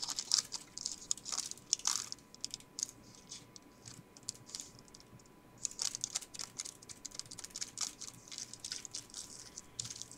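Pleated paper cupcake liner and a piece of kraft paper crinkling and rustling as they are handled and folded by hand: many small, quick crackles, quieter for a couple of seconds in the middle.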